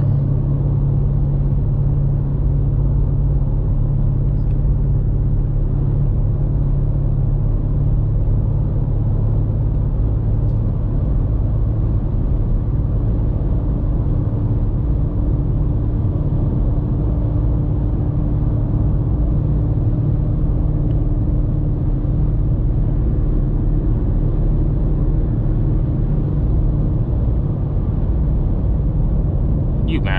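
BMW M5 Competition's twin-turbo V8 cruising steadily at highway speed: a constant low drone mixed with tyre and road noise. A faint steady hum joins in for a stretch in the middle.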